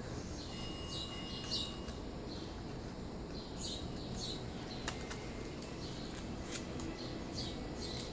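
Scissors snipping through paper a few times, sharp short cuts in the second half, with small birds chirping faintly in the background.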